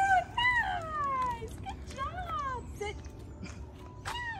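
A dog whining in a series of high, drawn-out whines, each sliding down in pitch, growing fainter towards the end.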